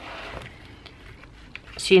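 Paper rustling as a spiral notebook and a punched paper sheet are handled. A brief, louder rustle comes right at the start, followed by a few faint taps.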